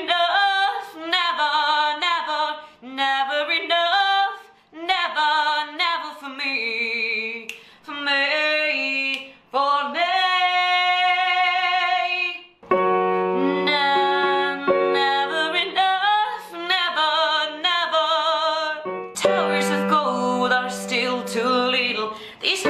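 A woman singing a song's chorus in full chest voice, with sliding, sustained melodic lines. About halfway through, steady held accompaniment notes come in under the voice.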